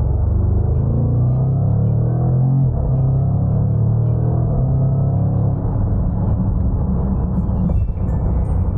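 Jaguar F-Pace SVR's supercharged 5.0-litre V8 pulling hard under full acceleration, its pitch climbing, dipping at an upshift about two and a half seconds in, then climbing again.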